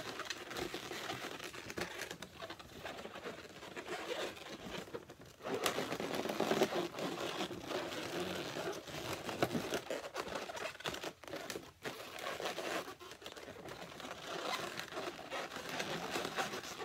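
Inflated latex balloons being handled and twisted close to the microphone: irregular rubbing, rustling and small squeaks of the rubber against itself and the hands.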